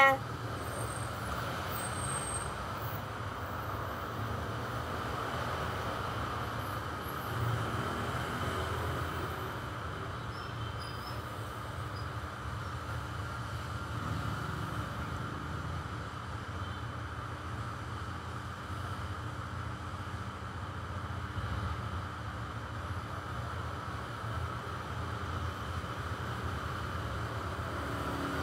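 Steady low background rumble with a fainter hiss above it, even throughout, with no distinct events.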